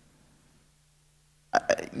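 A pause in a man's talk: about a second and a half of near silence with a faint low hum, then his voice starts up again near the end, opening with a throaty sound.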